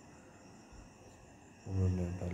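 Faint background with a few steady high-pitched tones, then a man's voice starting near the end.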